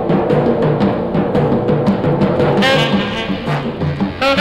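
Background music with brass and drums over a repeating low figure; a brighter brass phrase comes in about two-thirds of the way through.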